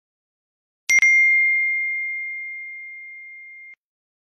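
A phone's incoming-message notification chime: a single ding about a second in, ringing on one clear pitch and slowly fading for nearly three seconds before cutting off abruptly.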